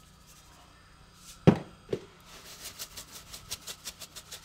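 A sharp knock about a second and a half in, with a lighter one just after, then a pepper shaker shaken over a frying pan of pork chops in a quick steady rhythm of about five shakes a second.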